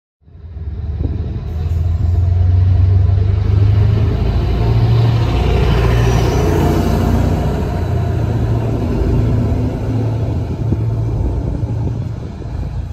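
Arriva passenger train running past along a station platform: a steady low rumble with wheel and running noise that builds over the first couple of seconds, is loudest around the middle and eases toward the end.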